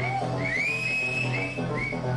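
Live minimal electro music played over a club sound system: a steady bass line under a high synth line of short rising glides about twice a second, with one longer gliding note in the first half.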